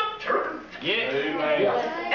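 A woman preaching in a loud, raised voice, with a short break about a third of the way in.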